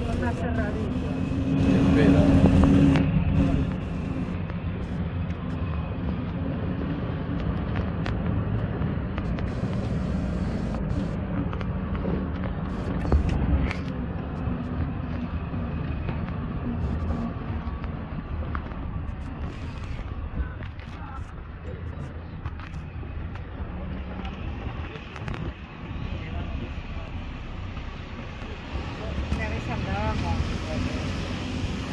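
Engine and road noise of an open-sided 4x4 tour truck driving over a rough dirt track, heard from the passenger benches. There is a steady low rumble with a louder swell about two seconds in.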